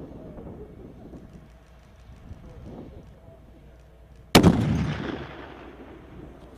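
A single shot from a .50-caliber sniper rifle about four seconds in, its report echoing away across the range for over a second.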